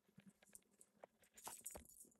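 Near silence with faint scattered clicks and crackles, coming thicker in the second half.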